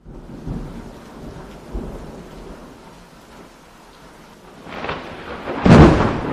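Steady rain with low rumbles of thunder, building to a loud thunder roll near the end.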